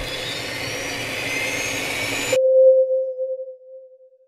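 Logo sting sound effect: a rising whoosh that cuts off suddenly a little over halfway through, followed by a single held tone that fades away.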